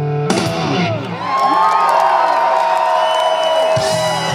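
Live rock band with electric guitars playing loud: a crash about a quarter second in, then guitars holding long sustained notes while the crowd whoops and cheers.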